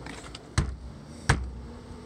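A brick striking a metal lever door handle on a wooden door to knock it back into position: two sharp knocks about three quarters of a second apart.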